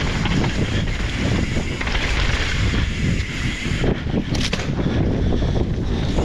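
Mountain bike descending a dirt forest trail at speed: wind buffeting the camera microphone over the rumble of tyres on dirt and the rattle of the bike over roots and bumps, with a sharper knock about four and a half seconds in.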